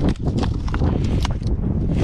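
Hands and climbing shoes knocking and scraping on brittle rock and dry dead pine roots while scrambling, about four sharp clicks over two seconds, with wind rumbling on the microphone.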